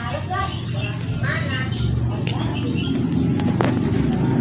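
A person's voice speaking in short, low bursts over a steady low hum, with one sharp click near the end.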